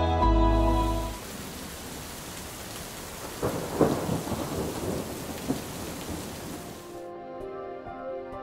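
Steady rain falling. A roll of thunder comes about three and a half seconds in, with a smaller crack near the end of the rain.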